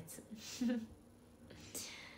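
A young woman laughing softly: two short, breathy, airy laughs, the second near the end.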